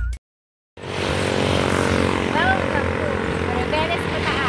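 A vehicle engine running steadily; it starts about a second in, after a short gap of silence. A few brief voice sounds rise and fall over it.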